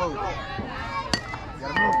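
Youth baseball bat striking a ball off a batting tee: one sharp crack about a second in, with spectators' voices around it.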